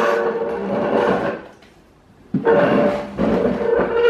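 A plastic dehumidifier cabinet being pushed and turned around, scraping with a squeaky tone in two long strokes: one at the start lasting about a second and a half, and another from about two and a half seconds in to the end.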